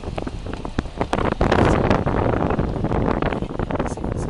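Vehicle moving over a rough stony track heard through an open window: a dense crackle of loose stones under the tyres, mixed with wind buffeting the microphone, which swells to its loudest about a second and a half in.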